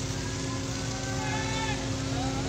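Steady low mechanical rumble with a constant hum, as of heavy machinery running, with faint distant voices calling over it from about half a second in.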